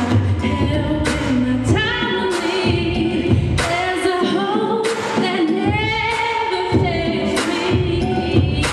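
A woman singing an R&B song into a microphone over a backing track with a steady beat and bass. The melody has sliding runs and long held notes.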